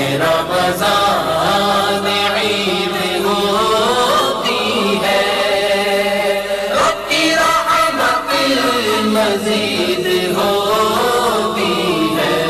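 A man's voice chanting a melodic Islamic recitation, with no instruments, its pitch rising and falling in long flowing phrases.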